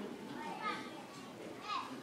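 Faint background chatter of children's and other voices, with a couple of short high calls.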